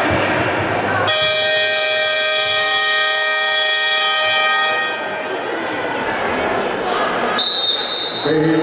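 Sports-hall horn sounding one steady blast of about three and a half seconds, starting about a second in, over crowd and bench chatter: the signal that playing time is up. Near the end, a short high whistle blast.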